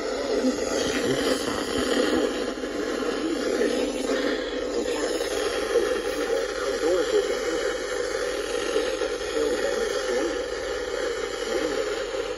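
NOAA Weather Radio broadcast through a small emergency radio's speaker: a voice reading a severe thunderstorm warning over steady static hiss, thin and lacking bass.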